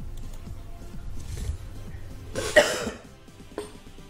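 A man coughs once, sharply, a little past halfway, over faint background music. A light mouse click follows near the end.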